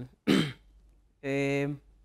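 A man clears his throat once, then holds a long hesitant "uhh".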